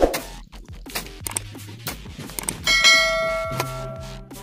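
Background music with a loud metallic ringing clang about two-thirds of the way in that dies away over about a second, following a few sharp knocks.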